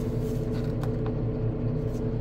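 Terex Franna AT20 crane's diesel engine idling steadily, heard from inside the cab, with two faint clicks.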